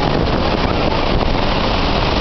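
Steady roar of Niagara's Horseshoe Falls close up, with wind buffeting the microphone.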